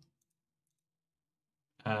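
Near silence: the sound drops to dead quiet between two spoken phrases, and a man's voice comes back in near the end.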